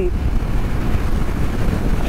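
Steady wind rush and road noise from riding a motorcycle at highway speed, heard as a loud low rumble on a helmet-mounted microphone.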